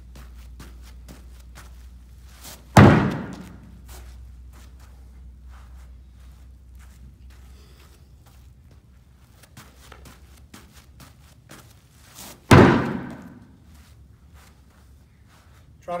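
Two loud impacts of a thrown ball striking a hard target, about ten seconds apart, each ringing on briefly in a large room, with light footfalls of hopping between them.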